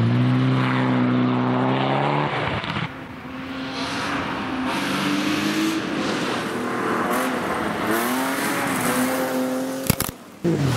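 A Mitsubishi Lancer Evolution rally car's engine running hard at high revs as it drives off on gravel. After an abrupt drop just under three seconds in, a second rally car's engine grows louder as it approaches, its revs stepping up and down through gear changes. A sharp crack comes just before the end.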